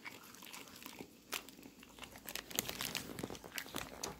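Chewing of soft sour strawberry candy strings: small, wet clicks scattered through, thicker in the second half, with light crinkling of the plastic candy bag.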